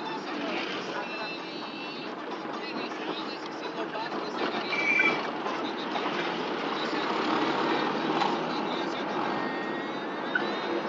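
Road and engine noise heard from inside a moving car driving through town traffic, with a short high-pitched beep about five seconds in.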